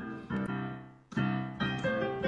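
Piano playing short blues pickup phrases. The first phrase's notes die away about a second in, and then a new run of notes begins.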